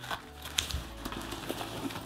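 A backpack's straps and fabric being handled: soft rustling of nylon with a couple of small knocks, about half a second in and again near one and a half seconds.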